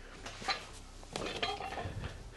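EZ curl bar loaded with iron weight plates being set down after a set: one short metallic clink about half a second in, then quieter handling and shuffling noises.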